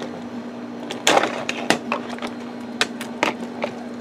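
Plastic inkjet cartridges being handled on a wooden table: a scatter of light clicks and knocks, the loudest about a second in, over a steady low hum.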